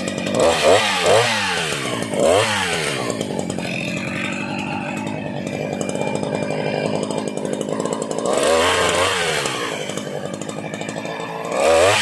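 Husqvarna 353 chainsaw's two-stroke engine revved up and back down in several quick blips in the first couple of seconds, then idling steadily. It is revved once more about eight and a half seconds in, and again just before the end.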